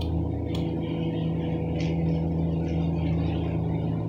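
Steady low engine hum, like a vehicle idling, with a single sharp click about half a second in that fits a lighter being flicked.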